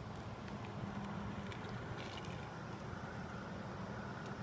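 Steady low outdoor background rumble with a hum, and a few faint, short high ticks.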